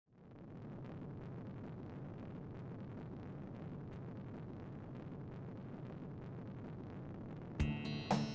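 A steady, even rushing noise fades in at the start and holds. Near the end, music with plucked notes comes in over it.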